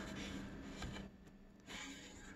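Quiet room tone with a faint steady low hum and light handling noises as a bare, unfinished wooden guitar body is touched and shifted on its packing.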